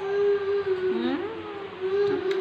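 Infant macaque crying: a long, steady, high-pitched wail that dips in pitch and comes back about a second in, then is held again.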